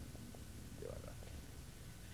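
Low steady hum and rumble of an old recording, with a brief soft vocal murmur about a second in and a few faint ticks.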